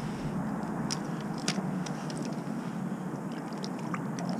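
Slush ice crunching and scraping around an ice-fishing hole as a gloved hand works in it, with a few sharp clicks over a steady low background noise.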